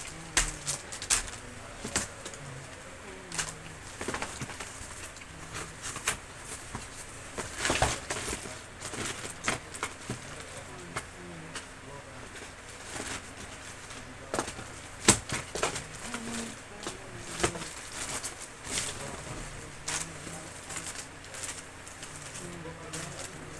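Pigeons cooing repeatedly in the background, in short low calls. Frequent sharp clicks and knocks of items being handled at a shop counter; the loudest comes about 15 seconds in.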